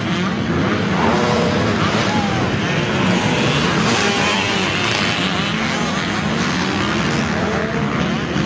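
250cc-class motocross bike engines racing on a dirt track, revving up and down as the bikes go through the turns.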